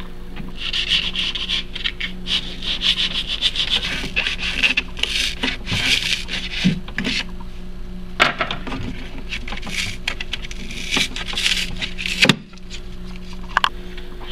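Serrated kitchen knife sawing and scraping through cured expanding spray foam in repeated strokes with short pauses, roughing up the foam's smooth cured skin. A sharp click comes about twelve seconds in.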